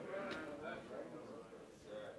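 Faint murmured voices from the congregation, a low spoken response in a large hall, fading out towards the end.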